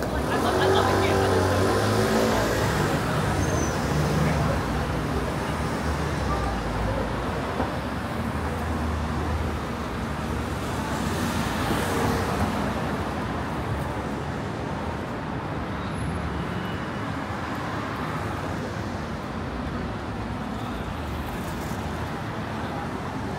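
Street traffic: a motor vehicle's engine passes close in the first few seconds, the loudest part, and a second vehicle swells past about twelve seconds in, over a steady traffic hum with voices of passers-by mixed in.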